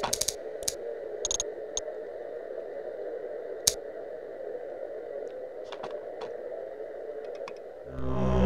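Scattered clicks of a computer mouse and keyboard over a steady hum, a few quick clicks at first, then single ones, the loudest near the middle.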